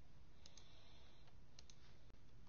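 Two faint clicks on a computer, each a quick double tick, about half a second and about a second and a half in, over a low steady room hum.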